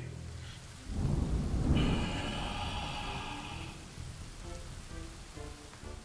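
Thunder rumbling with rain: a deep rumble swells about a second in with a rain-like hiss over it, then fades, and soft pitched music notes follow near the end.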